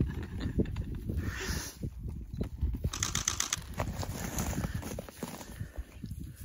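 Beef cattle herd close by, moving about in hay on frozen ground: irregular low thumps and rustles, with a quick rattle of clicks about three seconds in.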